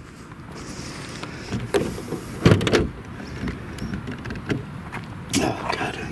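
Hood latch and release of a Mercedes-Benz CL500 being worked one-handed: a few sharp clicks and clunks, the strongest about two and a half seconds in, over a steady low hum.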